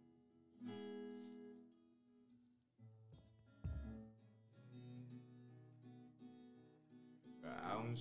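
Nylon-string classical guitar played softly between sung lines, chords strummed and left to ring out, with a low thump about three and a half seconds in. The singing voice comes back in near the end.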